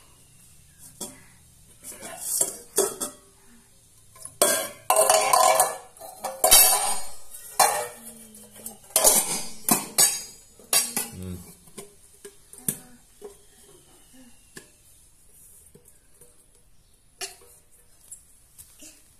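Stainless steel bowls and a lid clanking and clattering against each other and the floor as a toddler handles them, in irregular bursts of metallic knocks and ringing. The bursts are busiest in the middle and thin out to a few single clanks near the end.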